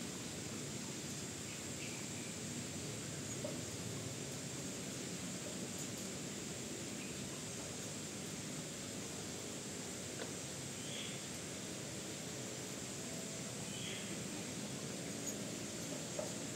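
Steady, low background noise with a few faint, short, high bird chirps spaced several seconds apart.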